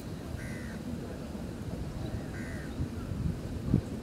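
A bird calls twice, short calls about two seconds apart, over a low rumble of wind on the microphone. A dull thump near the end is the loudest sound.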